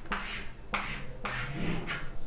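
Chalk scraping on a chalkboard: a handful of quick strokes, each up to about half a second long, as a short label is written and a box is drawn around it.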